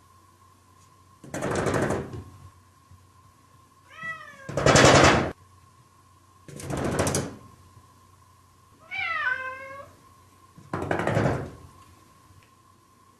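A cat meowing twice between four short bursts of rapid rattling knocks, each under a second long, the loudest coming just after the first meow. A faint steady high-pitched tone runs underneath.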